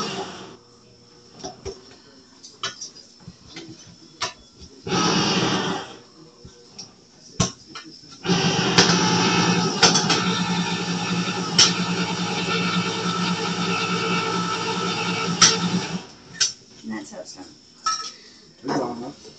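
Electric can opener motor running: a short run of about a second some five seconds in, then a steady hum for about eight seconds from just past the middle. Light clicks and knocks of handling come in between.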